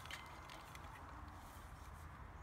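Near silence: faint outdoor background with a low steady rumble.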